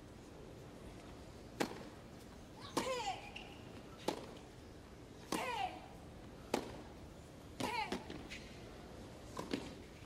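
A tennis rally: racket strings strike the ball about every second and a quarter, around seven hits in all. Most hits carry a short grunt from the player that falls in pitch.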